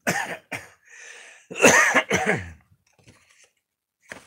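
A man coughing: two short coughs, a breath in, then two louder, throatier coughs about one and a half seconds in.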